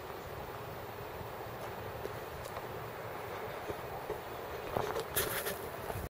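Steady outdoor background noise, with a few footsteps on a gravel path near the end.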